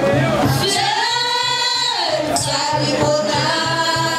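Haitian Vodou ceremonial song: voices singing over hand drums that keep a steady beat of about four strokes a second. One long held note bends upward about a second in and falls back about a second later.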